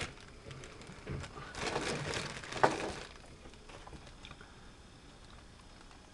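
Soft rustling and handling noise, with one light click, as small die-cast toy cars are picked up and set down.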